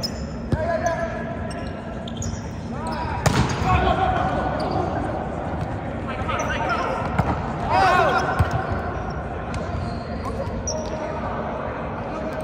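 Volleyball rally on a hardwood gym floor in a large hall: a few sharp slaps of hands on the ball, the loudest a little over three seconds in and again near eight seconds, with sneakers squeaking and players calling out between them.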